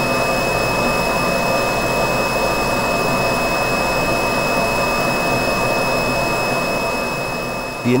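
FPZ K series side channel blower running steadily: an even rushing noise with a strong high-pitched whistle riding on top, plus fainter higher tones. This is the tonal whistle typical of evenly spaced impeller blades. The sound eases slightly near the end.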